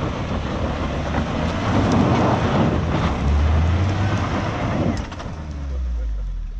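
Suzuki Jimny JB74's engine working under load as it climbs a steep, loose dirt slope, with tyres scrabbling on the gravel and dirt. The engine's low note swells twice, about three seconds in and again near the end.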